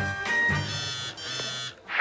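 The closing bars of a song, then from about half a second in a smartphone ringtone with a steady, buzzy tone that lasts about a second and cuts off just before the end.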